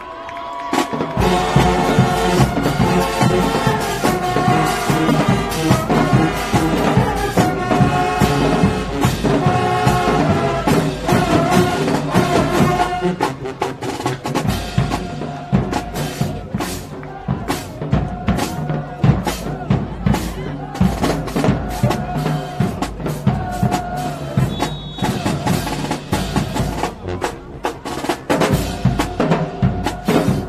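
Marching band playing loudly in the stands: brass horns and sousaphones holding chorded notes over a drumline's bass and snare drums, starting suddenly about a second in.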